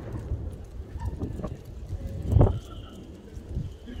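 Footsteps on brick and stone paving under a low rumble of wind and phone handling, with one loud, dull bang a little over two seconds in.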